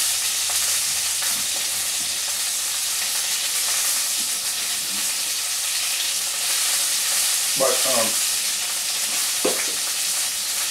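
Pork sausage sizzling steadily in a frying pan over low heat.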